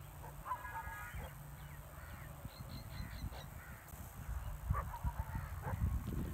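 Faint distant bird calls: one short call about half a second in, then a quick series of high chirps around three seconds in, over a low rumble.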